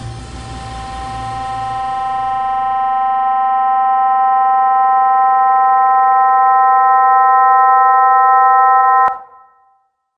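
Ending of an experimental techno track: the bass and noisy texture fade away over the first three seconds while a held electronic chord swells louder, then cuts off suddenly about nine seconds in.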